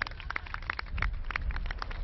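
Hand clapping from a small group, the individual claps coming quickly and irregularly, over a low rumble.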